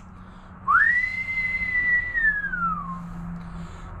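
A person whistles one long note: a quick rise, a held tone, then a slow glide back down.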